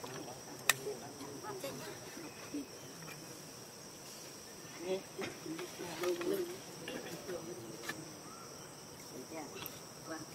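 Steady high-pitched insect chorus (crickets and cicadas) droning throughout. A faint low wavering murmur rises around the middle, and a single sharp click sounds just under a second in.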